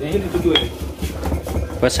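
Stone mortar and pestle pounding sambal ingredients: repeated dull thuds, with a sharp clink of pestle on stone about half a second in.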